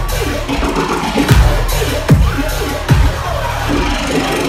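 Riddim dubstep played loud through a club sound system at a live show. Heavy bass hits, each dropping in pitch, land about every 0.8 seconds, with choppy, stuttering synth figures between them.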